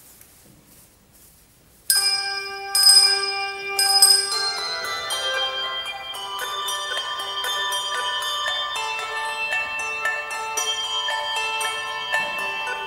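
Handbell ensemble playing: after about two seconds of quiet, the bells come in together with a sudden struck chord, then a flowing line of many overlapping bell tones that keep ringing under one another.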